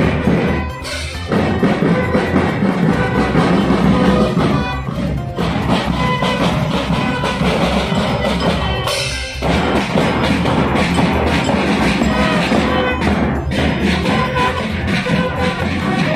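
Marching drum band playing a march, with drums and bass drums under pitched brass notes from bugles. The sound breaks off briefly about a second in, around five seconds in and around nine seconds in.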